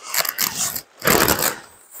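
Polyester tent fabric rustling and swishing in two bursts as a pop-up hub tent's side wall is hauled out by its handle.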